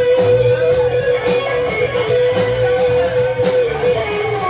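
Live band playing funk-rock with guitar to the fore over a bass line and a steady beat. One long high note is held until about three and a half seconds in.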